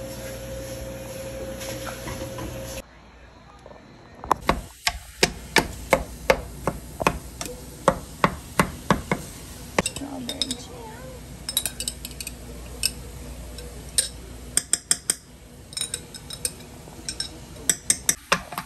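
A steady hum for the first few seconds. Then, after a cut, a long run of sharp, irregular clinks and taps, a few a second, of a glass jar and utensils against a metal pan of strawberries.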